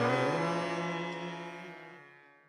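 Indian devotional chant music ending on a held note over a low drone, fading out steadily.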